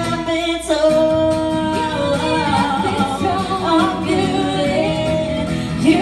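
Live singing with acoustic guitar accompaniment: a voice sings a slow ballad line with a long held note about a second in, and a second voice joins near the end.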